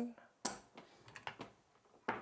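Casino chips clicking as a hand picks them up and sets them down on a craps table layout: one sharp click about half a second in, then a few lighter clicks.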